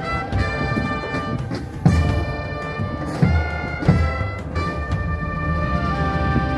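Brass band music: sustained horn notes moving from chord to chord, with a few heavy drum strikes about two, three and four seconds in.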